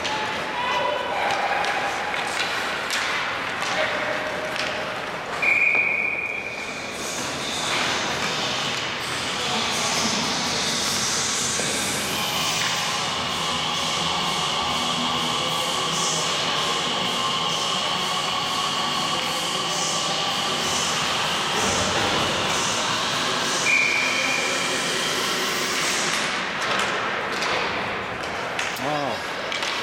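Ice hockey game echoing in a large, near-empty rink: distant voices of players and coaches, thuds of pucks and sticks, and two short whistle blasts, one about five seconds in and one near the end.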